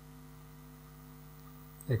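A steady low electrical hum, a few steady tones held through a pause in the talk, with speech starting again right at the end.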